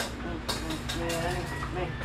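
Indistinct voices talking over a low, steady rumble.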